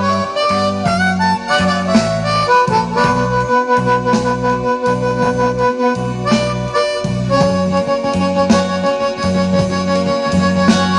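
Amplified blues harmonica played cupped to a hand-held microphone, holding long notes, over a backing track with a steady repeating bass line from a portable speaker.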